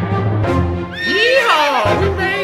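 A horse whinny sound effect about halfway through, a quavering call lasting about a second, over background music.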